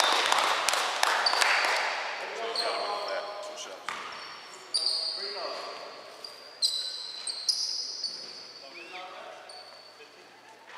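Basketball being bounced on a hardwood gym floor, with sharp sneaker squeaks and players' voices echoing in the gym. It is loudest at the start and grows steadily quieter as play stops.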